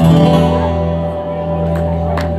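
A single chord strummed on an acoustic guitar and left to ring, its notes holding and slowly fading: the closing chord of the song.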